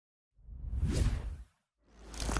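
Whoosh sound effects of an animated logo intro: one swelling whoosh starting about a third of a second in and fading out after a second, then another beginning near the end.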